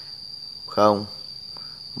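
Cricket trilling steadily, a continuous high-pitched tone.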